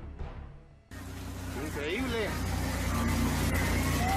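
Background music fading out over the first second. It is cut off by a loud, steady rush of outdoor noise on an amateur recording, with a low hum under it and a person's voice exclaiming about two seconds in.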